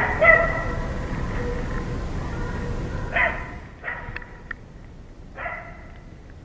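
Hunting dogs barking in a few separate bursts: a couple of barks at the start, another about three seconds in and one more near the end.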